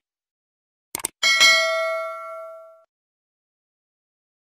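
Subscribe-button animation sound effect: short mouse clicks, then a bright multi-tone bell chime a little over a second in that rings and fades out over about a second and a half.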